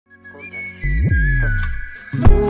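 Intro of a Portuguese-language rap/R&B song: a high, whistle-like synth note sliding slightly down in pitch, joined just under a second in by a deep bass swell that fades out toward the end.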